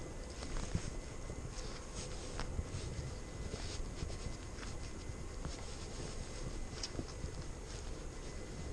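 Quiet outdoor background with faint rustling and scattered soft clicks, the small movements of a rider's gloves and riding gear picked up close to the microphone.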